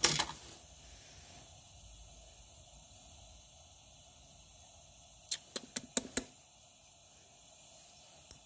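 Light metal clicks from a Coleman 220E lantern's brass fuel valve and generator tube assembly as it is handled during teardown. There is a sharp click at the very start, then quiet room tone, then a quick run of about six clicks a little past the middle.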